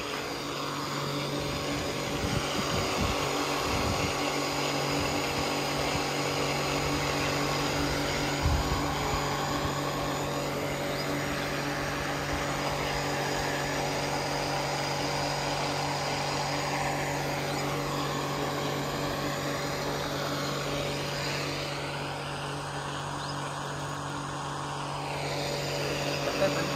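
Small electric water pump motor running with a steady hum.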